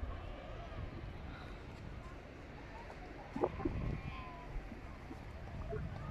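Wind rumbling on a phone's microphone, with faint distant voices drifting over it and a brief louder sound about three and a half seconds in.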